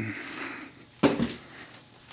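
Handling noise with a single sharp knock about a second in, as the cordless drill is set down and the range's sheet-metal work is handled.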